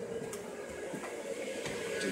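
A steady low mechanical hum, with a few faint knocks and clicks from the phone being handled as it moves.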